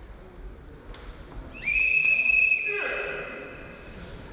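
A whistle blown once, a steady high tone about a second long starting about one and a half seconds in, signalling the fighters to stop and break apart. A voice calls out briefly as the tone fades.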